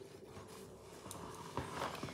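Faint rustling of a paper napkin as a nail-art brush is wiped on it, with a couple of soft ticks near the end.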